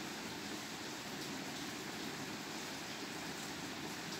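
Faint, steady background hiss with no distinct sound events.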